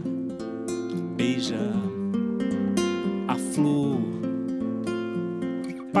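Classical guitar played fingerstyle: a solo instrumental passage of quick plucked notes and chords between sung lines. The voice comes back in at the very end.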